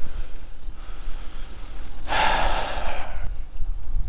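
Wind rumbling on the microphone of a moving bicycle. About two seconds in, a loud breathy exhale from the rider starts suddenly and fades over about a second.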